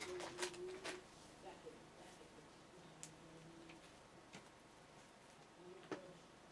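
Near silence with a few soft clicks and light handling noise, clustered in the first second and sparser after, as hands roll a section of hair onto a foam bendy roller.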